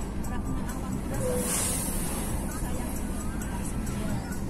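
Steady engine and road rumble heard inside a moving car's cabin, with a rising and fading whoosh about a second and a half in as an oncoming bus passes.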